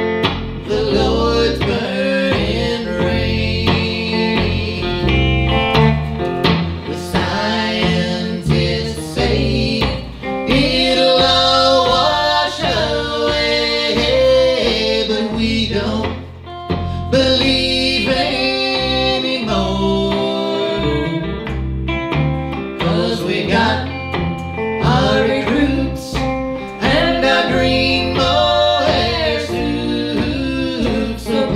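Country-rock band playing, with guitars and a voice singing.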